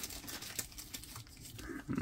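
Faint rustling and light ticks of trading cards and a clear plastic card sleeve being handled.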